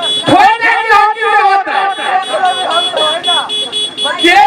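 A man talking into a microphone over a stage public-address system, his voice amplified and loud. A steady high electronic tone pulses evenly behind the voice.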